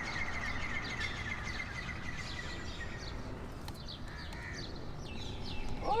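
Small birds chirping outdoors. A fast, steady, high trill fades out about two seconds in, followed by short, quick, falling chirps.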